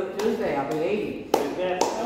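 Two sharp hand claps close by, about half a second apart a little past the middle, over people talking.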